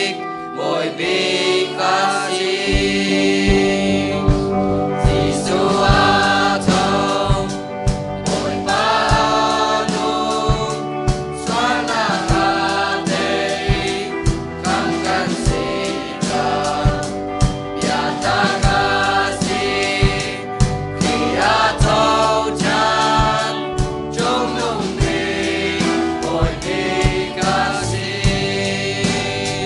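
A mixed youth choir singing a gospel hymn together, accompanied by guitar, with a steady beat running under the voices from a couple of seconds in.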